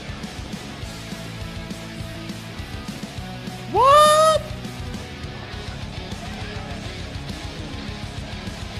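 Background music playing steadily. About four seconds in comes a loud, high-pitched vocal 'ooh' that rises sharply and then holds for under a second: a man's falsetto exclamation of surprise.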